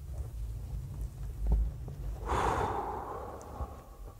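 A dull low bump about a second and a half in, then a man's long breathy sigh that starts about two seconds in, lasts over a second and fades out.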